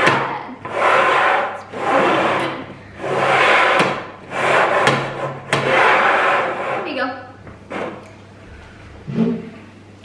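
Upturned bowls being slid back and forth across a wooden tabletop: a rough scraping that comes in strokes about once a second and stops about seven seconds in.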